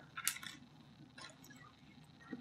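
Loose plastic LEGO bricks clattering and clicking on a tabletop as a hand picks through them: a brief clatter near the start, then a few faint clicks.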